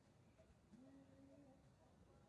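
Near silence: faint outdoor background, with one faint, brief pitched sound about a second in that rises briefly and then holds steady.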